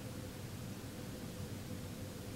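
Steady room tone: an even hiss with a low hum and a faint steady tone, unchanging throughout, with no other sound.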